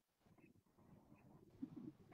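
Near silence: room tone, with a brief faint low sound near the end.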